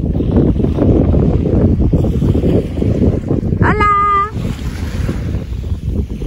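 Wind buffeting the microphone over the sound of surf. About two-thirds of the way in comes one short, high-pitched cry that rises at its start and then holds.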